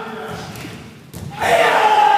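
Karate class performing a stepping punch in unison: a thud of feet and snapping gi about a second in, followed by a loud drawn-out group shout (kiai) that falls in pitch.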